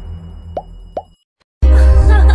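Two short rising pop sound effects, about half a second apart, over a low music drone: the click sounds of an animated subscribe button. After a brief silence, loud music starts near the end.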